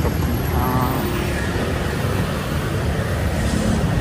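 Steady street traffic noise: a continuous low rumble with a hiss over it.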